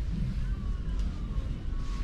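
Shop background noise: a low steady rumble, with a faint click about a second in.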